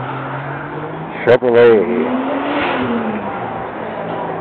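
A car engine revving as a car drives past: a sudden loud burst about a second and a half in, then the engine note rising for about a second and falling away. Crowd chatter runs underneath.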